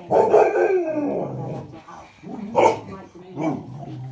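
Clumber spaniel making its 'wow wow' vocal noises: one long drawn-out call falling in pitch over the first second and a half, then two shorter calls in the second half.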